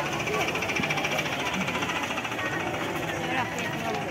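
Street bustle of a crowded fair: people's voices all around, under a rapid buzzing rattle from a small motorcycle engine running close by.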